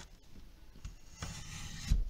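Sliding paper trimmer cutting through card: a short scraping rasp of the blade carriage running along the rail, ending in a thump about two seconds in.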